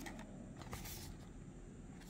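Faint handling of a small cardboard model-car box: a few light clicks and rustles.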